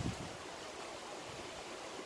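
Steady, faint hiss of background noise, with no distinct event.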